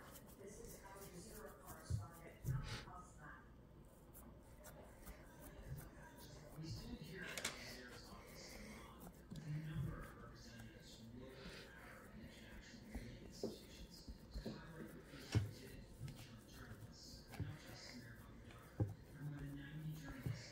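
Quiet kitchen sounds of hands pressing and smoothing cookie dough on a wooden board, with a few short soft knocks and faint, indistinct murmuring voices.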